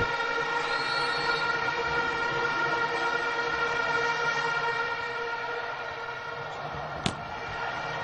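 Arena crowd blowing plastic stadium horns in a steady droning chord that eases slightly partway through. A single sharp smack of a volleyball being served comes about seven seconds in.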